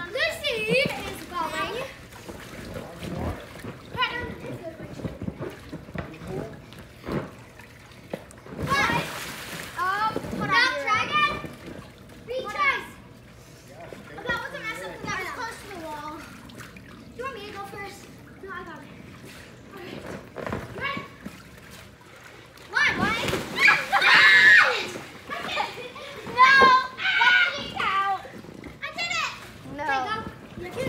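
Children shouting and squealing in a swimming pool, with water splashing. There is a burst of splashing about nine seconds in, and the loudest stretch of shrieks and splashing comes around twenty-three seconds in.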